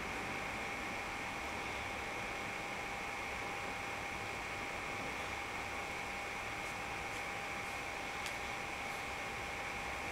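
Steady hiss of a desktop computer recording setup, with a faint steady whine throughout and one faint click about eight seconds in.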